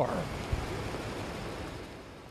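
Steady rushing of water, fading out gradually, with one brief low knock about half a second in.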